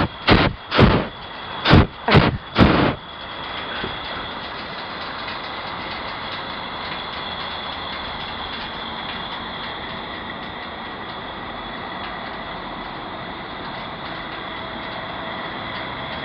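Hot-air balloon's twin propane burner fired in short blasts, about five loud whooshes in quick succession during the first three seconds, followed by a steady, much quieter rushing noise.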